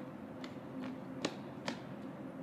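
Footsteps on pavement: four sharp steps at a brisk walking pace, the last two loudest, over a steady low hum.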